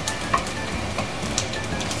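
Diced pork frying in hot oil in a skillet, sizzling steadily while browning, with scattered short pops and clicks as a wooden spoon stirs it in the pan.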